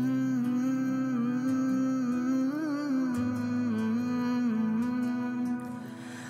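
Background music: a voice humming one long held note for about six seconds. It slides up into the note at the start and makes a brief wavering turn a little past halfway.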